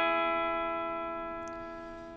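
Clean electric guitar, a Fender Telecaster, holding a country-style half-step bend on the second string. The bent notes ring at a steady pitch and fade slowly.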